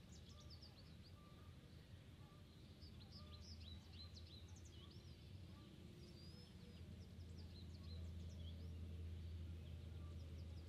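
Faint outdoor quiet with scattered small-bird chirps and short whistled notes throughout, over a low steady hum.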